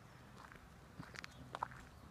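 Quiet outdoor pause with a few faint, short clicks between about one and one and three-quarter seconds in.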